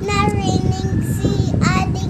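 A young boy's sing-song voice: one long held note, then a short rising note near the end.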